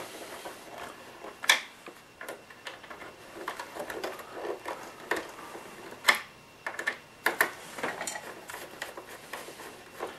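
Small screwdriver turning a screw into the plastic hull of a 1/16 scale RC tank model, with irregular light clicks and scrapes of plastic; sharper clicks stand out about one and a half and six seconds in.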